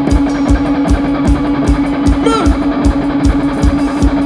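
Live rock band playing: an electric guitar holds one long sustained note over a steady kick-drum beat of about four a second. About two seconds in, the singer shouts a single word to the crowd over the music.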